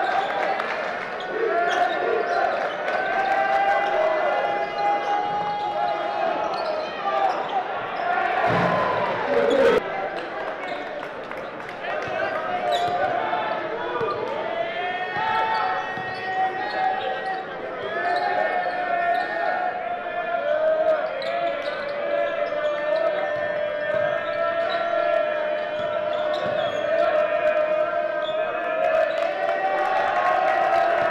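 A basketball bouncing on a gym floor, with voices echoing in a large hall.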